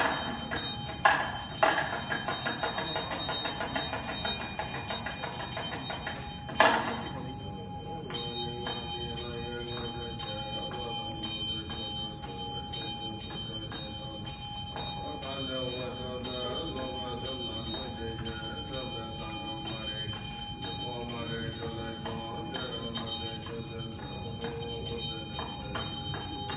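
Tibetan Buddhist ritual: a bell is rung steadily with fast, regular strikes and a ringing tone. One loud struck accent comes about six and a half seconds in. From about eight seconds a chanting voice with a wavering melodic line joins, heard through a PA system.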